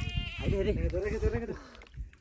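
A man's drawn-out, quavering excited cry over water splashing and churning as a speared fish thrashes at the surface.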